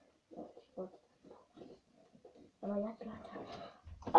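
A boy's faint, indistinct vocalising in a small room, growing louder about two and a half seconds in.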